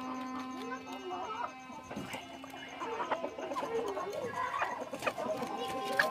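A flock of hens clucking as they feed, with short overlapping calls throughout and a few sharp taps.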